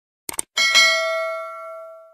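Two quick clicks, then a single bright bell ding that rings and fades over about a second and a half: the click-and-bell sound effect of a subscribe-button animation, the cursor pressing the notification bell.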